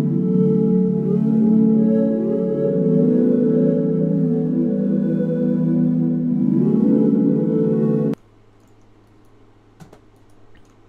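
Software synthesizer pad playing a slow loop of sustained B minor chords with rising pitch sweeps through them. It cuts off suddenly about eight seconds in, leaving a faint hum and a small click near the end.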